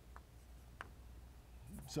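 Faint chalk strokes and taps on a blackboard: two short clicks in the first second, over a low room hum.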